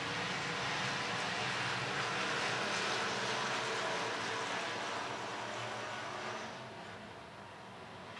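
A field of hobby stock race cars running at speed on a dirt oval, their engines blending into a steady drone that grows quieter about six and a half seconds in.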